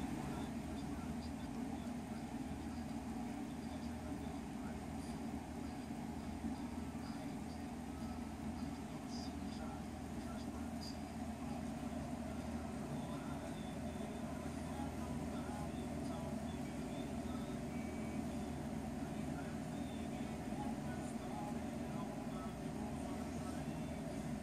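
Hand-held electric drill running steadily with a low hum, with a few faint clicks.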